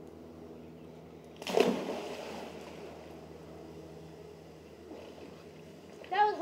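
A person jumping off a diving board into a swimming pool: one loud splash about a second and a half in, then the water sloshing and settling.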